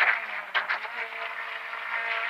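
Rally car engine heard from inside the cockpit, holding a steady note, with brief sharp sounds at the start and about half a second in.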